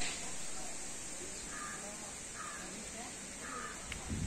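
Three short bird calls about a second apart, faint over a steady background hiss.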